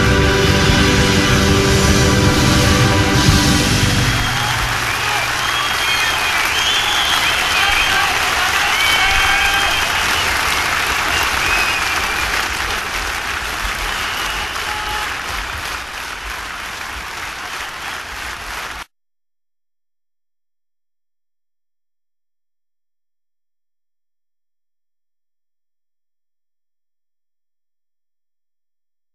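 A band's closing chord rings out and ends about four seconds in, giving way to a concert audience applauding and cheering with scattered shouts. The applause fades slowly, then cuts off suddenly about two-thirds of the way through.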